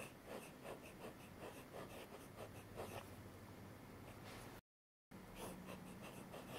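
Broad italic fountain-pen nib scratching across paper in a run of short, irregular strokes as letters are written, faint throughout. The sound cuts out completely for about half a second near the end.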